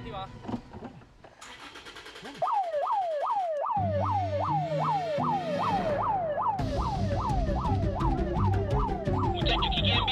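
Electronic alarm siren switched on remotely to trap the thieves in the truck, starting about two and a half seconds in. It repeats a quick rising-and-falling yelp about two and a half times a second.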